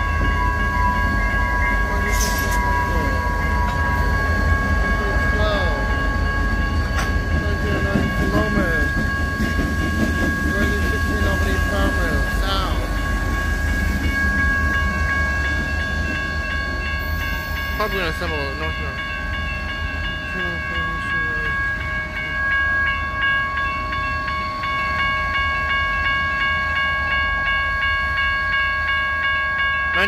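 Two diesel locomotives rumbling past at close range while the grade-crossing bells ring steadily; the engine rumble eases about halfway through as the locomotives move away, and the bells keep ringing.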